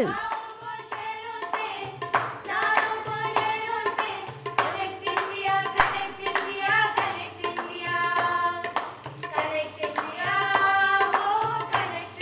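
A group of women singing a melody together, with hand-claps keeping a steady beat.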